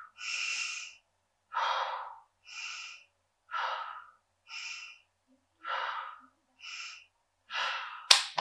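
A woman breathing audibly in a slow paced rhythm, in and out about four times, each breath a short hissing puff with a brief pause between. It is a guided calming breath exercise, breathing in as the finger traces up a finger and out as it traces down.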